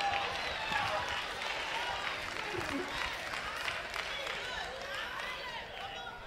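A church congregation responding aloud: many voices calling out and talking at once in a steady crowd murmur, with no single speaker standing out.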